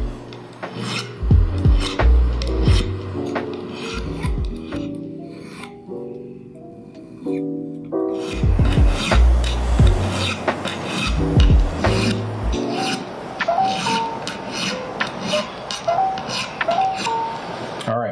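Steel fret end file drawn across the ends of a guitar neck's metal frets in repeated short rasping strokes, rounding the fret ends over slightly, with a pause in the middle. Background music with a bass line plays underneath.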